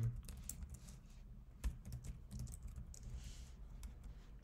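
Typing on a computer keyboard: a run of irregular key clicks, one louder about a second and a half in.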